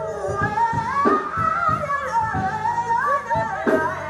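Live gospel singing: a woman's lead voice sliding and bending between notes, with other voices and a band of bass and drums behind her.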